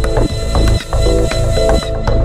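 Electronic dance track with a heavy bass line, a regular drum beat and a repeating synth figure. A bright hiss-like noise layer sits over the top and cuts off just before the end.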